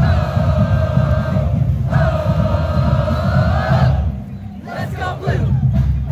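Marching band members shouting together: two long, held unison yells of about two seconds each, then scattered voices from about four seconds in, over a low rumble.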